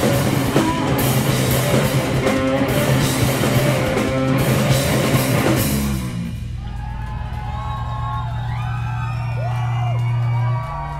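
Live heavy rock band with drum kit and electric guitars playing loudly; about six seconds in the drums stop and a low held note is left ringing, with wavering high tones over it, as the song ends.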